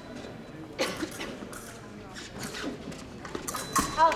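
Fencers' shoes tapping and stamping on the piste during footwork: a few sharp knocks about a second in and a quicker cluster near the end.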